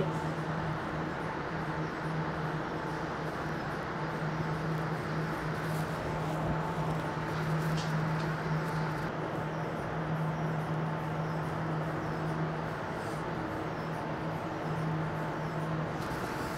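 Steady low hum of coating-lab machinery, with a few faint knocks about six and eight seconds in.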